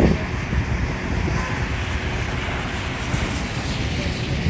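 Steady low rumble and hiss of vehicle traffic on a wet street, with no distinct events.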